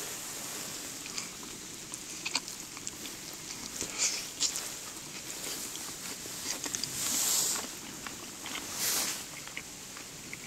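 A person chewing crisp fried bacon, with scattered small crunches and clicks and a few louder crunchy bursts about 4, 7 and 9 seconds in.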